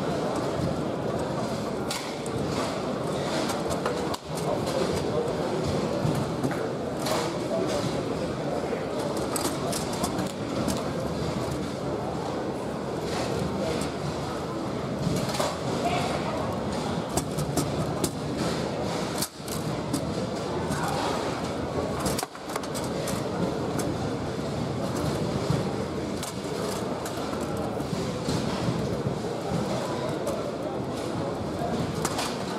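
Sharp clacks and knocks of the ball and rods on a Bonzini foosball table during fast play, over a steady background of indistinct voices in a large hall.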